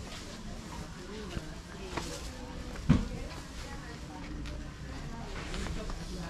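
Market ambience: faint voices of people talking in the background, with a single short knock about three seconds in.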